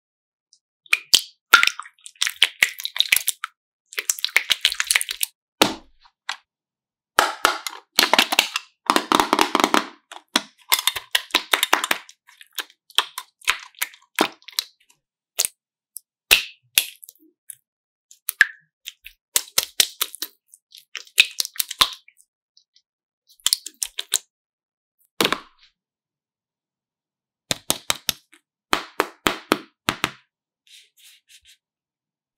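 Slime being squeezed and stretched by hand, making clusters of sticky pops and crackles that come in bursts with short silent gaps between them.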